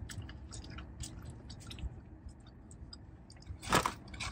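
A person chewing food close to the microphone, with many small wet mouth clicks, and one short louder noise near the end.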